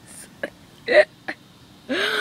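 A person's single short vocal burst about a second in, amid a few soft clicks and handling noise; a louder voice sound starts right at the end.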